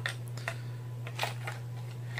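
Hands handling a small plastic case and its gear: a few light clicks and rustles over a steady low hum.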